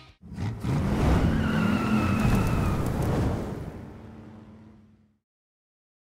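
A car engine revving with a high tyre squeal over it, loud for about three seconds and then fading out over the next two.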